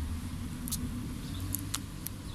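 A steady low mechanical hum, like an engine running nearby, with three short sharp high clicks in the second half.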